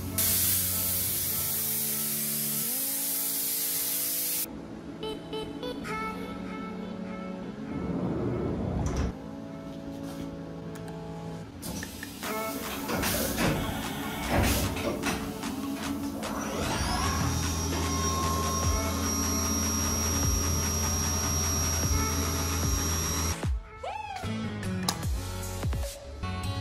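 Background electronic music with sustained chords, and a loud hiss over the first four seconds or so.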